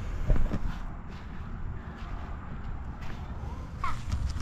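Steady low rumble of wind on the microphone, with a few light knocks from the camera being handled about half a second in.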